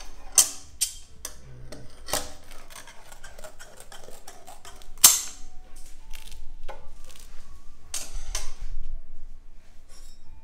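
Metal candy scrapers knocking and scraping on a steel work table as hot sugar is worked, sharp clacks at irregular intervals, the loudest one about five seconds in.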